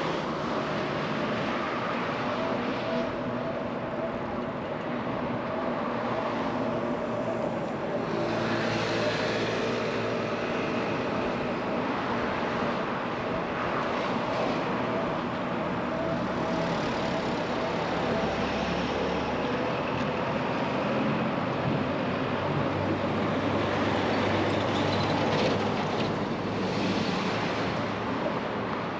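Road traffic: cars and trucks running and passing close by, a continuous noise of engines and tyres that swells and fades as vehicles go past.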